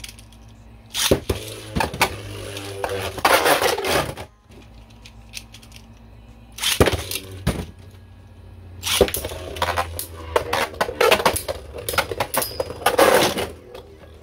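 Beyblade Burst spinning tops clashing in a plastic stadium: bursts of sharp clicks and rattling clatter as they knock against each other and the stadium walls, with quieter spells of spinning in between.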